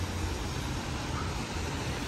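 Road traffic on a wet city street: a steady rumble and hiss of passing vehicles.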